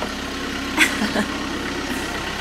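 Motor vehicle engine idling with a steady low hum, and one short sharp sound a little under a second in.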